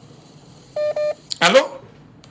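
Two short electronic beeps in quick succession, each about a fifth of a second, from the phone line carrying a listener's WhatsApp call as it comes on air.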